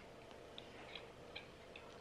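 Near silence with a few faint, light clicks of plastic as tea is slowly poured from a plastic cup into ice-lolly moulds.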